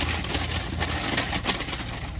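Paper takeout bag rustling and crinkling as a hand rummages around inside it, over a steady low hum.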